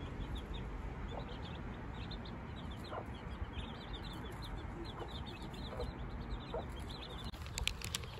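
Chicks peeping in rapid, high little cheeps, with a mother hen giving an occasional low cluck as she forages with them. A few sharp clicks come near the end.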